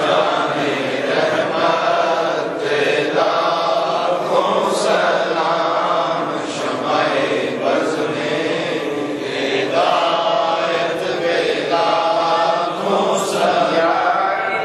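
A group of men chanting a devotional recitation together in unison, a continuous line of phrases rising and falling.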